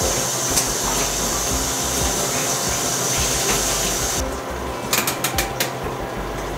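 Tap water running steadily into a bucket and a stainless steel film-developing tank, cut off abruptly about four seconds in; a quick run of light metallic clicks follows near the end.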